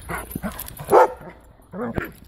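Dogs play-fighting, with a few short barks, the loudest about a second in and another near the end.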